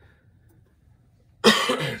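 A man's single loud cough about one and a half seconds in, after a quiet stretch of room tone.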